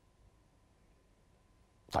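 Near silence: quiet studio room tone during a pause in speech. A man says one short word at the very end.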